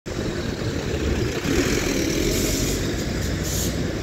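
Mercedes-Benz OH 1621 city bus driving past at close range: diesel engine rumble and tyre noise over surrounding bus traffic, with two brief hisses, one about halfway and one near the end.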